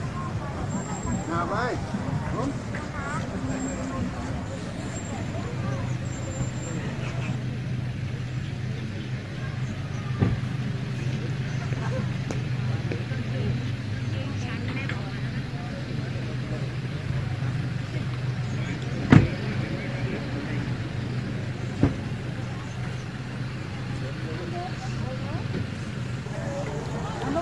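A vehicle engine idling with a steady low hum, with voices in the first few seconds and three sharp clicks, the loudest about two-thirds of the way through.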